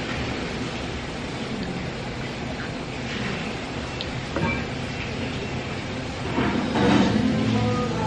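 Steady rumbling background noise of a busy coffee bar, with a small glass tapped down on a wooden table about four seconds in.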